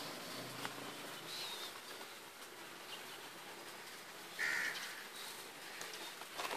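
A bird calls once, briefly, about four and a half seconds in, over faint outdoor background, with a fainter high chirp a little over a second in.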